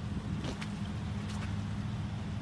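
Vehicle engine idling with a steady low hum, and a few faint clicks.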